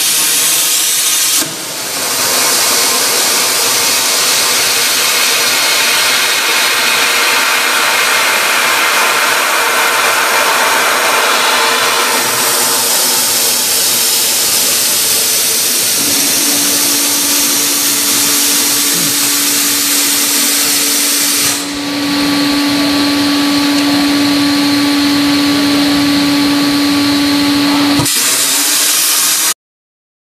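CNC plasma torch cutting a steel tube: a loud, steady hiss that dips briefly twice, at about a second and a half in and again about two thirds of the way through. A steady low hum joins about halfway through, and all the sound cuts off suddenly just before the end.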